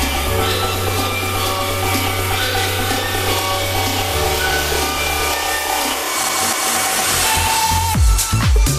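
House music from a DJ mix in a breakdown with no kick drum: long held bass notes under sustained chords. The bass drops away about three-quarters of the way through as a hissing noise builds up.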